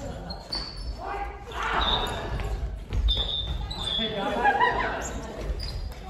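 Family badminton rally in a large gym hall: a racket hits the shuttle sharply about three seconds in, with footsteps and shoe squeaks on the wooden floor. Players call out to each other, and the hall echoes.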